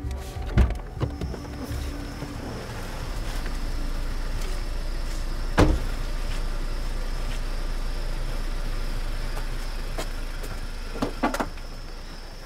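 Car door banging shut once, about halfway through, over a steady low hum and hiss. Two sharp clicks come close together near the end.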